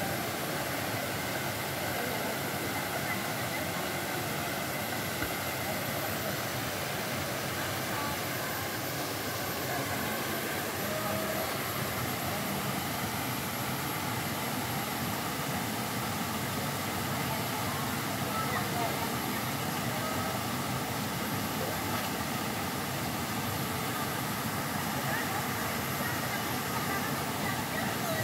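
Small waterfall falling into a rock pool, a steady rush of water throughout, with people's voices over it.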